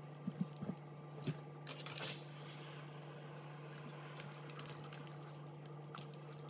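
Light clicks and taps of hands handling thick wool coat fabric on an ironing board, then a short hiss about two seconds in with a fainter hiss trailing after it as a steam iron presses the fabric. A low steady hum runs underneath.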